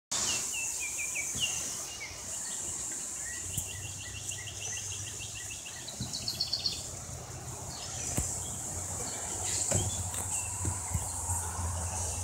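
A steady, high-pitched insect drone, with runs of short, high chirps over it, including a rapid evenly spaced series a few seconds in. There are a few scattered clicks and a low rumble.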